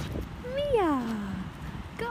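A person's voice giving one drawn-out, cheering call like "yaaay", rising briefly and then sliding down in pitch.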